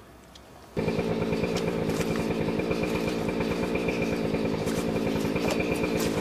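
Small two-stroke chainsaw engine idling steadily, cutting in abruptly about a second in.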